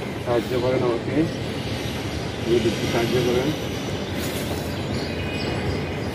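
Domestic pigeon cooing in two low, warbling phrases of about a second each, one near the start and one about halfway through, over a steady hum of city traffic.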